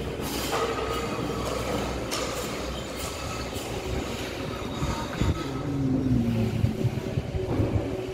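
Construction-site noise: metallic knocks and clatter over a steady background. About five and a half seconds in, a squeal that falls in pitch comes in over a low hum, with the loudest knocks soon after.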